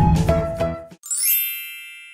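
Intro music ending about a second in, followed by a bright sparkling chime that rings and fades away.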